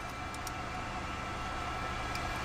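Steady hum and hiss inside the cockpit of an Embraer Phenom 300 jet on the ground, with a few faint small clicks about half a second in.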